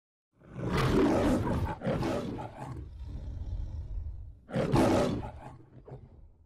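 The MGM studio logo's lion roaring: a long roar starting about half a second in, a shorter one right after, and another loud roar near the five-second mark that trails away.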